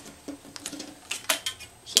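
A metal ruler being picked up, shifted and set down on cardstock over a cutting mat: a few light taps and scrapes, the sharpest just before the end.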